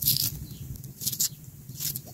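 Dry skin of a small onion crackling and scraping as it is peeled and cut against a machete blade, in three short scratchy bursts: at the start, about a second in, and near the end.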